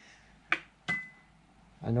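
Two sharp metal clinks about a third of a second apart, the second leaving a brief ringing tone, as the piston and small tools are set down on a steel ground plate.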